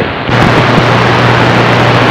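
Radio transceiver's speaker in receive giving loud, steady static hiss with a low hum under it and no readable voice in it: the calling station is buried in the noise.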